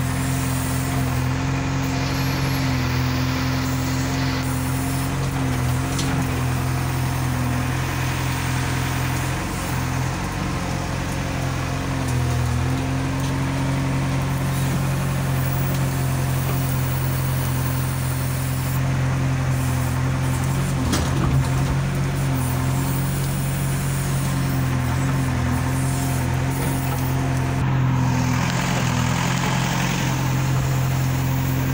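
JCB 3DX backhoe loader's diesel engine running steadily, heard from inside the cab, its speed dipping briefly a few times.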